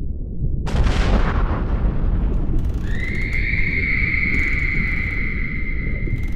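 Film sound effects: under a deep steady rumble, a sudden explosion-like blast hits about a second in and dies away. About three seconds in, a steady high-pitched ringing tone begins and holds.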